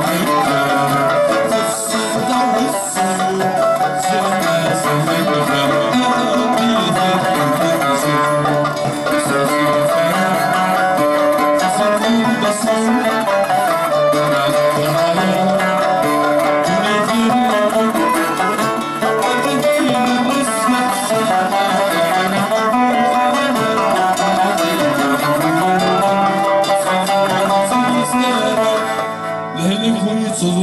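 Live Kabyle folk ensemble playing an instrumental passage: mandole, acoustic guitars, banjo and violin together in a flowing melody, the loudness dipping briefly near the end.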